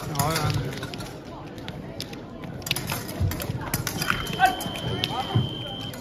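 Electric fencing scoring box sounding a steady high tone for about two seconds near the end, signalling that a touch has registered. Before it, quick footsteps and clicks from the bout under voices in a sports hall.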